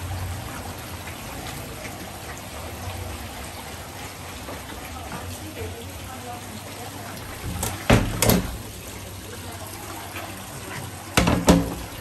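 Steady trickle of running water in a crayfish pond, with a couple of short sharp knocks about eight seconds in and again near the end.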